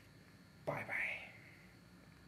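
Speech only: a man saying "bye" once, softly, about two-thirds of a second in, with quiet room tone before and after.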